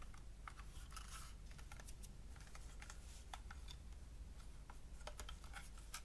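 Faint, irregular clicks and light rustling as the plastic case of a Personal Jukebox PJB-100 MP3 player is turned over and handled in the hands.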